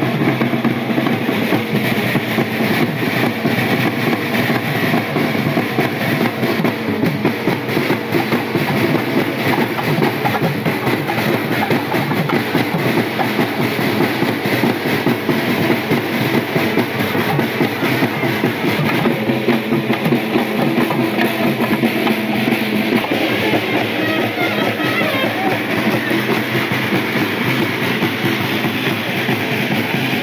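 Music with drums playing steadily and loudly throughout, as from a band accompanying a street temple procession.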